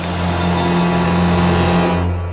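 Dark, suspenseful background score built on a sustained low drone that swells slightly toward the end.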